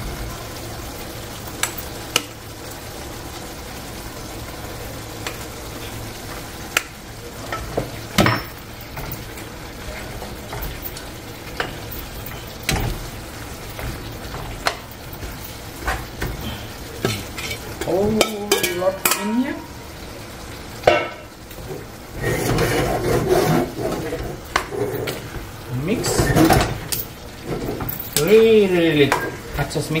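Raw goat meat chunks going into a hot pan of fried onion and masala, sizzling steadily, with a metal spoon knocking and scraping against the pan as the meat is stirred to coat in the curry base.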